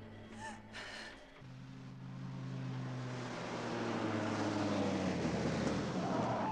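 Film soundtrack: a couple of short electronic chirps in the first second, then a low, steady synthesizer chord over the rising noise of an approaching truck engine that grows louder toward the end.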